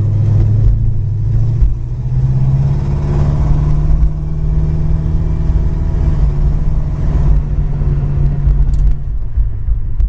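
A 1972 Plymouth Duster's 318 V8 engine running under way, heard from inside the cabin over low road rumble. The engine note rises about two seconds in, holds steady, then drops back near the end.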